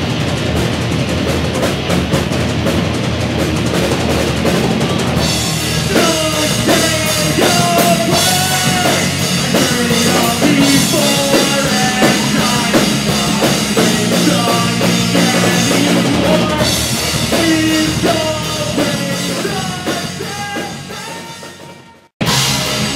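Live pop-punk band playing amplified: drum kit, electric guitars and bass, loud and steady. Cymbals come in about five seconds in with a melody line over the band, and the music fades out over the last couple of seconds.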